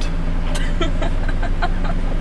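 Steady low hum of a car's engine and road noise heard from inside the cabin, with a few short, faint sounds over it.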